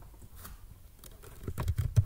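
Typing on a computer keyboard: a few scattered keystrokes, then a quicker run of keys in the second half.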